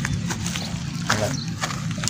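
A few irregular footsteps on dry leaves and dirt, over a steady low hum.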